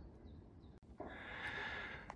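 Near silence, then from about a second in a soft, drawn-out breath, a person breathing in after a brisk uphill climb.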